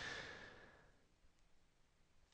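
Near silence, with a faint breath fading out in the first half-second.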